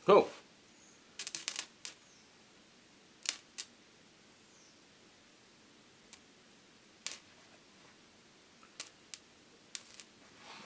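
A man's short exclamation, then a few brief crackles as a carbon rod from a 12 volt battery and jumper cables touches thin steel and strikes an arc. The crackles come in a cluster about a second in, a pair after three seconds, one near seven seconds and a few near the end. It is low-voltage carbon-arc welding that leaves a spot weld.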